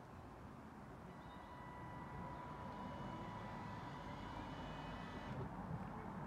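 Caravan motor mover's electric motors running faintly, driving the caravan forwards on the remote: a steady whine starts about a second in, grows slowly louder, and stops shortly before the end.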